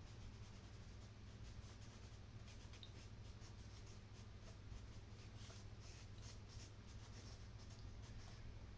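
White chalk scratching faintly across tinted drawing paper in short repeated strokes, about three or four a second, starting a couple of seconds in.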